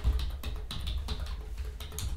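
Computer keyboard typing: a quick run of key clicks, about five a second, as a word is typed, over a low steady hum.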